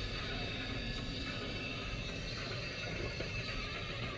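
Low, steady rumble of a car creeping along at parking-lot speed, heard inside the cabin, with faint high wavering tones over it.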